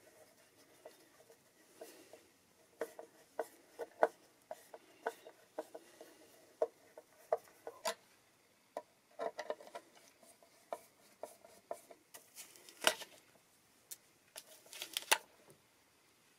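Irregular light clicks and taps of hands and a screwdriver working on a Stratocaster-style guitar's pickguard and tremolo spring cavity, scattered through with a few small clusters and a handful of sharper knocks.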